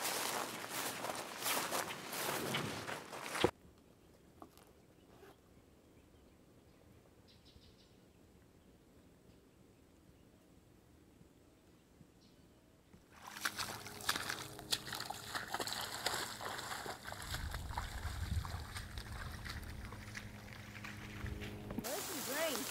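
Walking noise for the first few seconds that cuts off abruptly, then near silence; about thirteen seconds in, heavy rain starts falling on the surrounding vegetation, with a low rumble partway through.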